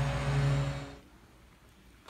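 A steady low hum with hiss, fading out about halfway through, then near silence.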